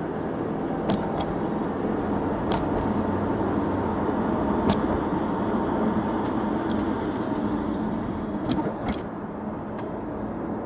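Steady road and engine noise of a 2005 Audi A4 heard from inside the cabin while driving. A handful of short sharp clicks come at irregular moments, the loudest near the middle and about nine seconds in.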